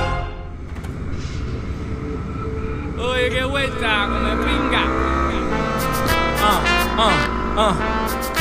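Onboard sound of a Yamaha R25's parallel-twin engine running under way, with wind noise on a helmet camera. A hip-hop song comes in over it about three seconds in.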